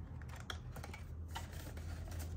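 Faint clicks and light rustling as paper banknotes and plastic envelopes are handled in a ring-binder cash wallet, over a steady low hum.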